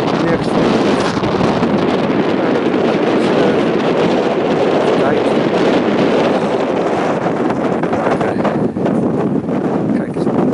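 Wind blowing across the camera's microphone on an exposed tower top: a loud, steady rushing noise that does not let up.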